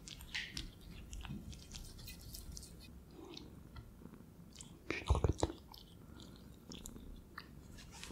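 Ferret chewing and nibbling food close to the microphone, many small moist clicks and crunches. A brief cluster of louder knocks comes about five seconds in.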